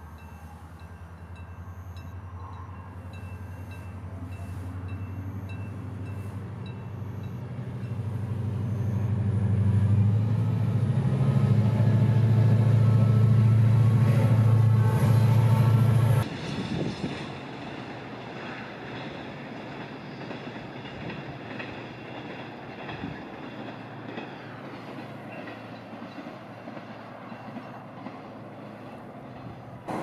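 Diesel-hauled freight train approaching and passing: the locomotive's engine drone builds steadily, is loudest from about ten to sixteen seconds in, then drops away suddenly, leaving the rumble and clatter of the freight wagons rolling by. A level-crossing warning bell rings in quick regular strokes over the first few seconds.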